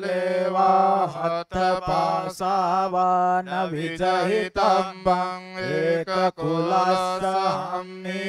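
A male voice chants Pali Tipitaka scripture in Buddhist recitation, held almost on one steady pitch in long phrases. There are short breaks for breath about a second and a half in and again near six seconds.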